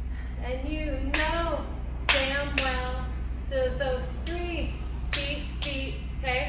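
A woman singing a slow melody without clear words, with a few sharp claps, over a steady low hum.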